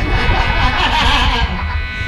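A live rock band's amplified instruments sounding briefly between songs, over a steady amplifier buzz.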